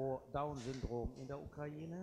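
Quiet speech: a voice talking more softly than the surrounding talk.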